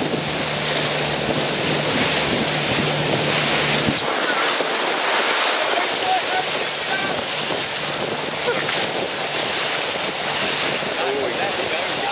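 Wind buffeting the microphone over choppy sea, with water rushing and splashing against a boat's hull. A low steady hum runs under it and stops abruptly about four seconds in.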